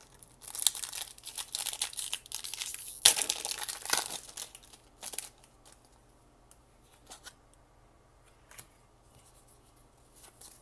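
Foil wrapper of a Pokémon trading-card booster pack being torn open and crinkled by hand, a dense crackling over the first four seconds that is loudest about three seconds in. One more short crinkle follows about five seconds in, then only a few faint clicks as the cards are slid out.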